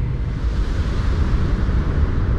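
Pickup truck engine idling, heard from inside the cab as a steady low rumble.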